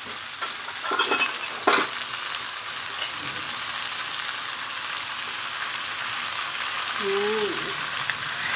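Chicken pieces, potatoes and vegetables sizzling steadily in chili paste in a frying pan, stirred with a wooden spatula. There are two sharp knocks about one and two seconds in.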